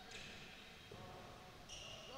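Very faint court noise from a basketball game in play in a gym, close to near silence, with a brief thin high squeak near the end.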